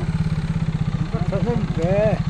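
A small engine idling with a steady, rapid low throb, under people talking.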